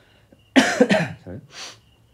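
A man coughing: two loud coughs in quick succession about half a second in, then a quieter noisy breath out.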